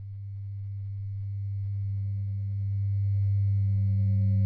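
A low, steady electronic drone that swells gradually louder, with a fainter tone an octave above it: a sustained tone from the film's soundtrack.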